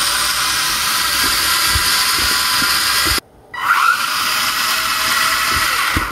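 The four DC gear motors of a Freenove Arduino 4WD robot car running as it drives, a steady high whine. It cuts off abruptly about three seconds in, then rises again as the motors spin back up.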